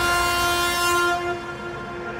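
Hardstyle breakdown: a held synthesizer chord with no drums, thinning and getting quieter in the second half.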